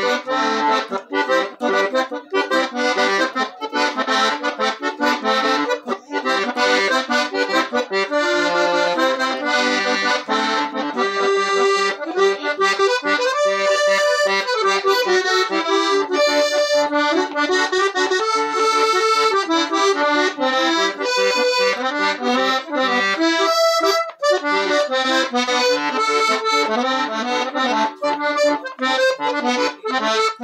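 Small Parquer piano accordion with 22 treble keys and 8 bass buttons playing a chamamé melody, a steady stream of short reedy notes over the bellows.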